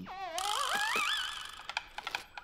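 Cartoon sound effect: a whistle-like warbling tone that dips, then climbs in pitch over about a second and fades, followed by a few light ticks near the end.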